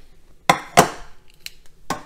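Kitchenware knocking and clinking: two sharp knocks close together about half a second in, then a couple of lighter clicks near the end.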